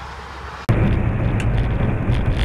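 Semi truck driving down the highway, its engine and road noise heard as a steady, loud rumble inside the cab. It cuts in suddenly less than a second in, after a faint outdoor hum.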